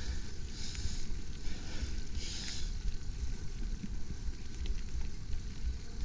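Mountain bike riding down a dirt singletrack: a steady low rumble of wind and trail buffeting on an action camera's microphone, with a few short hissing surges.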